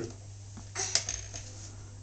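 A brief clatter with one sharp click about a second in, from a baby grabbing and handling a plastic toy hung on the crib rail, over a steady low hum.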